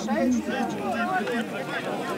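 Several spectators talking at once, their voices overlapping into close, indistinct chatter.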